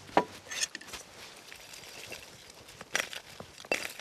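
A few light clicks and knocks of a metal pan and utensil being handled on a wooden table, four sharp ones spread out over the few seconds.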